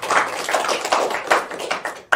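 Audience applauding: a small group clapping, with individual claps heard distinctly.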